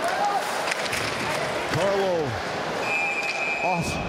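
Ice hockey arena game sound: a noisy crowd with individual fans shouting three times, and sharp clacks of sticks and puck during play. A steady high tone, like a whistle, sounds for about a second near the end.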